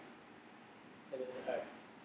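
A brief spoken utterance, a word or two, from the narrator about a second in, over faint room tone.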